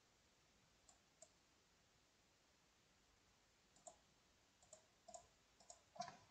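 Faint, sparse clicks of a computer keyboard and mouse: two about a second in, then a quicker run of clicks in the last two seconds.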